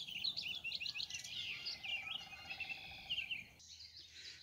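Birds chirping and singing: a busy run of quick high notes with rising and falling glides that stops about three and a half seconds in.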